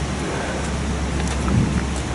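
A steady rushing noise with a low rumble underneath, even throughout, with no distinct events.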